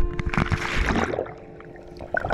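Splash of a snorkeller in fins dropping into the sea, then about a second of churning underwater bubbles that fades away. Background music with held notes plays over it.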